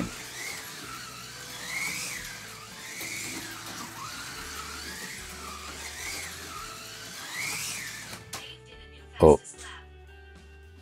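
Revoslot Marcos LM600 slot car lapping hard, its small electric motor whining up and down in pitch as it speeds along the straights and slows for the corners, with the hiss of the tyres and guide running in the track. The whine cuts off suddenly about eight seconds in. About a second later comes one short, loud sound.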